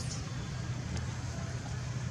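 A steady low background rumble, even in level throughout, with a couple of faint, brief clicks.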